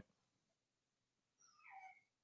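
Near silence between speakers: room tone, with a very faint, brief high-pitched sound near the end.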